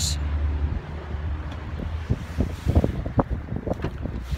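Wind buffeting the microphone as a low rumble, strongest in the first second, with scattered short knocks from the phone being handled later on.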